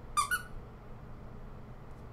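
Two quick high-pitched squeaks close together, the second a little higher than the first.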